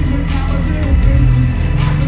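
Live hip-hop played loud through a PA: a dense, noisy beat with heavy bass and hard drum hits, and a rapper's voice over it.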